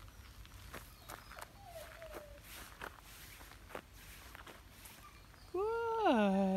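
Footsteps on a gravel road, a person walking away at an irregular pace. Near the end a person's voice calls out once in a long, drawn-out call that rises, then falls in pitch.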